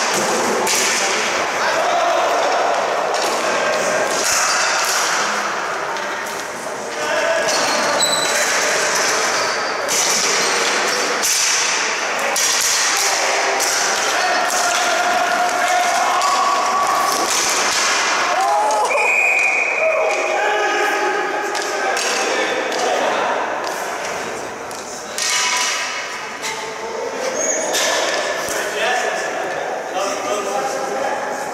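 Ball hockey play in an echoing arena: the ball and sticks clack and knock on the concrete floor and boards, and players shout to each other. A single referee's whistle blast comes about two-thirds of the way in, stopping play after a collision in the crease.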